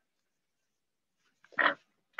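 A pause with near silence, then about one and a half seconds in a single short non-speech noise from the presenter's mouth or nose.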